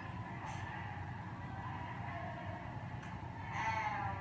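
A faint, drawn-out voice near the end over a steady low hum.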